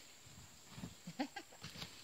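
Woven sack rustling as a person draped in it shifts and drops to the ground, with a few short, soft, low vocal sounds in quick succession in the second second.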